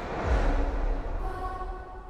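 Trailer sound design: a deep low rumble comes in just after the start, with a rushing whoosh over it and faint held music tones, easing off toward the end.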